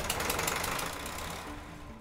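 Machinery running: a steady low engine-like hum with a hiss over it that fades away toward the end.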